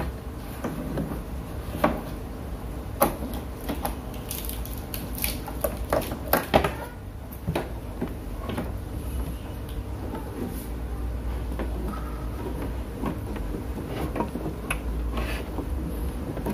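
Scattered clicks and knocks of cables and plugs being handled and pushed into the sockets of a set-top box, thickest between about three and seven seconds in, over a low steady hum.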